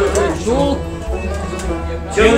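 Kashmiri Sufi song: a man sings a short gliding phrase over sustained harmonium with a low pulsing beat. The music drops lower in the second half, between sung lines.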